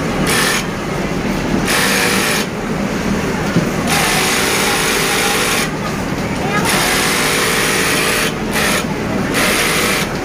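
Industrial multi-needle sewing machine stitching in runs of one to two seconds, stopping briefly between runs.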